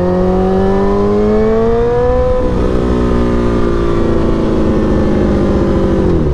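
Sportbike engine pulling under acceleration, its pitch climbing for about two and a half seconds, then dropping at an upshift and running steadier in the higher gear. A steady rush of wind noise lies underneath.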